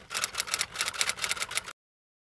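A rapid, irregular run of sharp clicks, several a second, that cuts off abruptly a little past halfway through, leaving dead silence.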